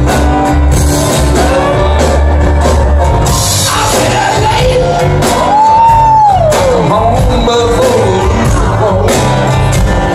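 Live band playing with acoustic guitar, keyboards and drums under a singing voice. About six seconds in, a voice holds a loud high note that slides down.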